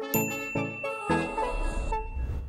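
Short outro music jingle of struck, bell-like notes, one about every half second, each dying away, with a thin, high ringing ding sound effect from a notification bell that starts just after the beginning and hangs on.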